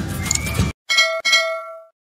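Background music cuts off, then a notification-bell sound effect dings twice, the second ding ringing on and fading out.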